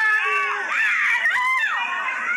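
High-pitched shrieks and squeals from several voices at once, with one long arching cry about one and a half seconds in.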